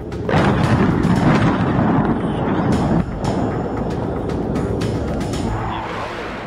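Dramatic news-channel transition sting: music with a loud rumbling, boom-like sound effect that starts suddenly, shifts about halfway through and then fades.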